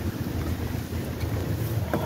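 Wind noise on the microphone: a steady low rumble with a faint hiss.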